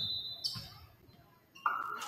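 A referee's whistle blast, a single shrill steady note that cuts off about half a second in, stopping play between volleyball rallies. Gym voices rise again near the end.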